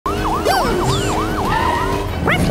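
Cartoon police siren sound effect: a fast yelp whose pitch swoops down and back up about three times a second, settling into a held tone near the end.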